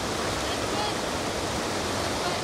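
River water rushing steadily over a rock ledge and through a small rapid.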